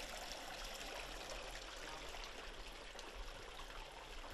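Faint, steady trickle of mountain spring water running out of a limestone crevice.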